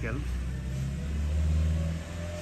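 A low, steady engine hum that swells a little about a second and a half in.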